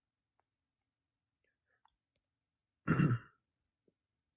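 A man clears his throat once, a short burst about three seconds in, with near silence around it.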